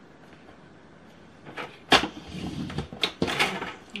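Paper trimmer's scoring blade drawn along its rail to score a fold line in cardstock, followed by the card being lifted and turned on the plastic trimmer. After a quiet start, sharp plastic clicks about two and three seconds in, between bursts of scraping and rustling.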